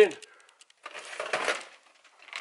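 A brief rustle with a few light clicks and clatters about a second in, as stored gear is handled and shifted.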